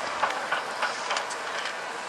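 A slalom skier's skis scraping hard snow with a steady hiss, and a quick run of sharp clacks about three a second from the skier knocking gate poles aside.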